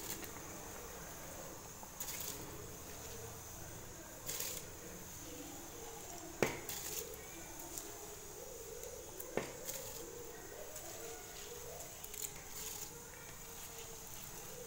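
Rice being poured into a pot of biryani gravy: faint soft pattering and wet sloshing as the grains drop into the liquid, with two sharp clicks about six and nine seconds in.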